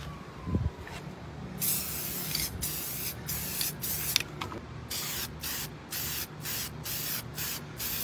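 Aerosol spray-paint can sprayed in bursts, starting about a second and a half in: one longer spray, then a run of short, quick bursts, about two or three a second, with a brief pause around the middle.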